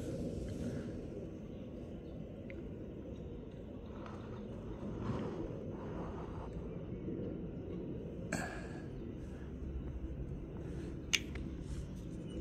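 Low, steady background rumble with a few soft rustling handling noises and one sharp click near the end.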